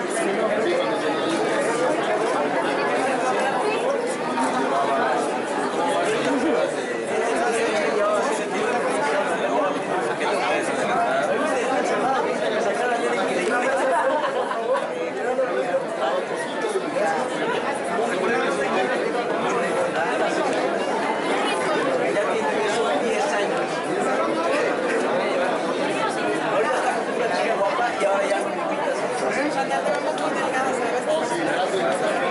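Steady chatter of many people talking at once, their voices overlapping with no break.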